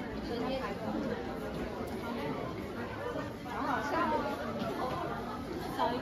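Crowd chatter: many people talking at once in a crowded room, with one nearer voice rising above the babble about halfway through.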